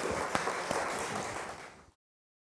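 Audience and panel applauding, many hands clapping in a room; the clapping fades out near the end.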